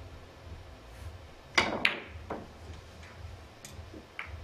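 Three-cushion billiard shot: the cue tip strikes the cue ball about one and a half seconds in, then a sharp ball-on-ball click follows a moment later. A few fainter clicks of the balls come after.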